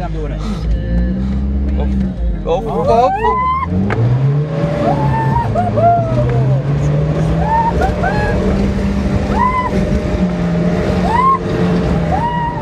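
SUV engine driving over sand dunes, its pitch jumping up about three and a half seconds in and climbing slowly as it pulls under load, with passengers' short rising-and-falling exclamations over it.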